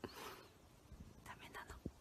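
Very quiet: a person whispering softly, with a breathy burst at the start and a few faint short rustles and clicks about halfway through.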